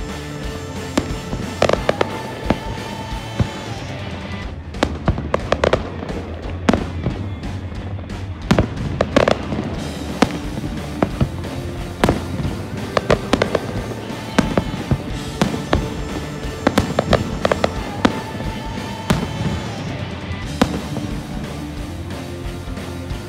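Aerial fireworks shells bursting, with repeated sharp bangs and crackles at irregular intervals, several in quick succession at times.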